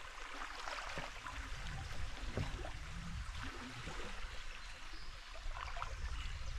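Shallow river current rippling past close by: a steady wash of moving water with many small splashes and trickles.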